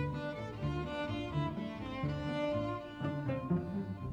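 String orchestra playing, with cellos and double basses bowing a repeated figure of short low notes under held higher string lines.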